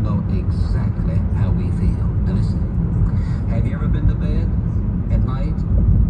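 Steady low road and engine rumble inside a car cabin at highway speed, with a voice talking over it throughout.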